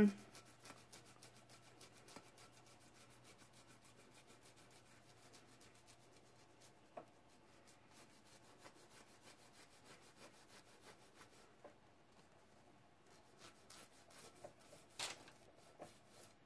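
Faint, quick rubbing of an acetone-soaked cloth rag over a painted tumbler, stripping the paint to expose the glitter layer beneath. A brief louder click comes near the end.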